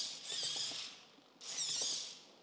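Small servo motors in the legs of a homemade four-legged robot whining as they move the legs, in two bursts of about a second each with a short gap between.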